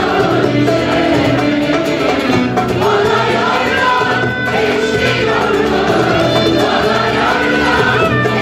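A Turkish art music choir of men and women singing, accompanied by ouds, keyboard and a frame drum, with a steady low beat.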